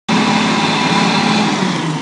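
An engine running at a steady speed, easing off slightly in level near the end.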